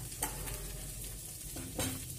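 Chopped onion, capsicum, tomato and carrot sizzling softly in mustard oil in a steel kadhai. Two light clicks sound, one just after the start and one near the end.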